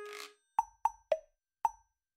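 Four short, bubbly cartoon-style pops, each dying away quickly, the first three close together and the fourth after a short gap; a held tone fades out with a brief hiss just before them.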